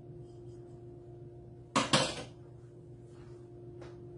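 A metal utensil clanks twice, quickly, against a stainless steel mixing bowl a little under two seconds in, followed by a faint click near the end.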